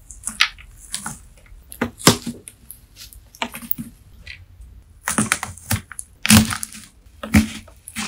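Wax-coated melamine sponge layers, soaked in slime, cracking and crunching as a knife is pushed down through the stack: a run of sharp, irregular crisp cracks, some in quick clusters. Recorded on a phone's built-in microphone.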